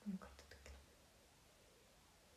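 A brief low murmur from a person's voice, followed by three soft clicks within the first second.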